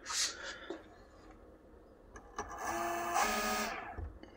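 Small electric sewing machine motor running briefly and turning its pulley, a steady whine that shifts in pitch partway through and stops just before the end.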